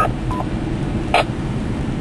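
Steady road and engine noise inside a moving vehicle, with a two-way radio giving a short beep just after the start and a brief chirp about a second in, between transmissions.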